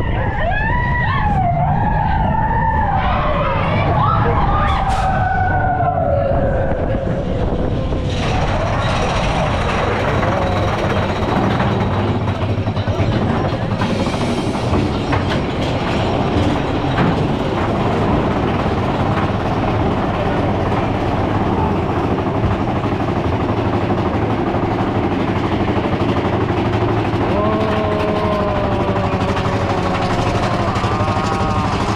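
Riders on a mine-train roller coaster yell and scream with wavering, gliding voices through the first several seconds. From about eight seconds in, the train's steady rattling rumble on the track takes over as it climbs a chain lift hill.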